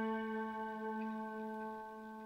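A single sustained slide-guitar note, rich in overtones, ringing out and slowly fading in a song's country-style intro.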